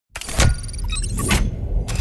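Cinematic sound-design intro: a steady low rumble that begins just after the start, a sharp hit just before half a second in, then more clicks and hits.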